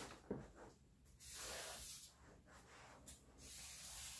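Faint scratchy rubbing of a drawing tool being traced along the edge of a picture frame onto a sheet of paper, with a light tap about a third of a second in.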